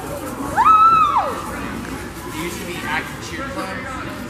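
A single long yell from a cheerleader, rising in pitch, holding, then falling away, about half a second in, over the chatter of a crowd of cheerleaders.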